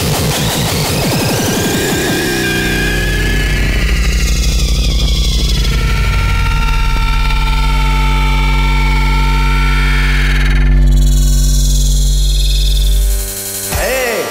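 Electronic bass music: a dense, distorted synth passage with a rising sweep, then a long sustained deep bass note under steady synth tones, which drops out about thirteen seconds in.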